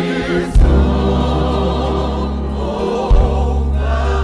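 Gospel choir singing a slow song in held, sustained notes over instrumental accompaniment, with deep bass notes striking about half a second in and again around three seconds in.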